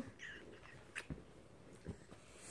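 Faint small sounds from a baby and a toddler up close: a brief soft squeak near the start, a small click about a second in, and a couple of soft bumps of movement on a couch cushion.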